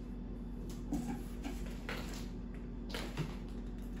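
A few short scrapes and knocks from a cardboard box, with a cat inside it, as it is handled. A steady low hum runs underneath.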